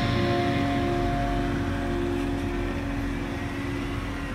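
BMW coupe's engine running with a low rumble as the car reverses out of a driveway and pulls into the street. A sustained, held music chord plays over it.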